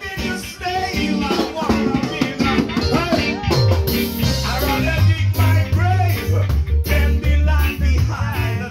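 Live band music with a singer over drums and keyboard; a heavy bass line grows stronger from about five seconds in.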